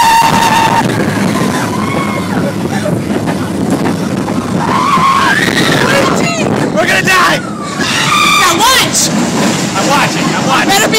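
Riders on a roller coaster screaming and yelling, with rising and falling shrieks about halfway and again near the end, over the steady rush of wind and the coaster running on its track.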